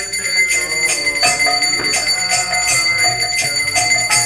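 Kirtan music: a hand bell rings continuously over a steady beat of drum and hand-cymbal strokes, about two a second, with a melody line in the middle range.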